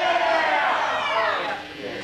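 Indistinct voices speaking and calling out, with no music playing.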